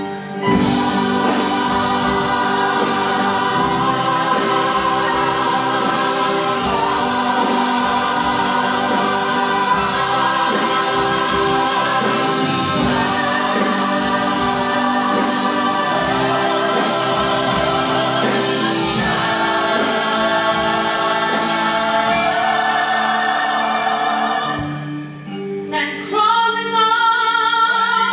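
Ensemble of stage-musical voices singing together in long held notes over a musical accompaniment. About 25 seconds in the chorus breaks off and a single voice with a wide vibrato begins.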